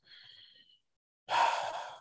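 A man's sigh: a breathy exhale starting about a second and a half in, loudest at its start and fading over about half a second, with a frustrated air while he hunts for something on his computer.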